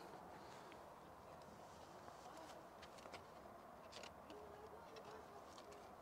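Near silence: faint background with a few soft ticks and, near the end, a faint brief tone.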